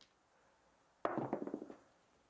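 A pair of dice is thrown onto a craps table. About a second in they clatter and tumble for just under a second, then settle.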